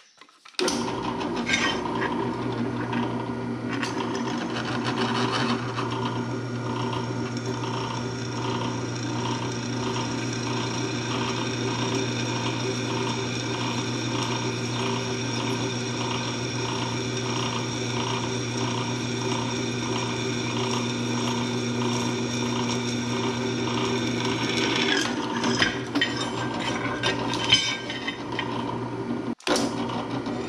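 Drill press starting up about half a second in and running, its twist bit cutting into a steel plate: a steady motor hum with a regular, pulsing scrape from the cut. A few sharper knocks near the end as the plate is shifted on the table.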